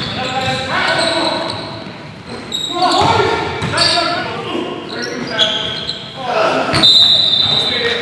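Basketball game sounds in a large gym: a ball bouncing on the hardwood floor, sneakers squeaking in short sharp chirps, and players calling out to each other. The loudest squeak comes near the end.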